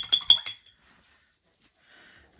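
A paintbrush clinking against a glass jar: a quick run of four or five ringing clinks in the first half second, then quiet.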